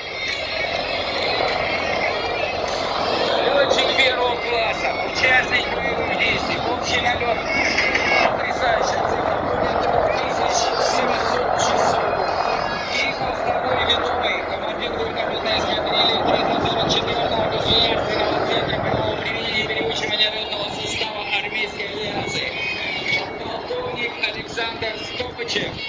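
A formation of military helicopters flying overhead at a distance, heard as a steady drone of rotors and turbine engines. Voices come and go over it.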